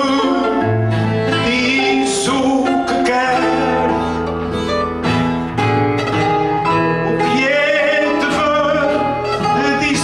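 Cantoria ao desafio: a man singing an improvised verse in Portuguese, accompanied by a Portuguese guitar and acoustic guitars strumming and picking underneath.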